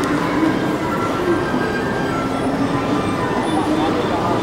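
Steady ambience of a large, busy terminal hall: a reverberant hum with the voices of people talking in the background.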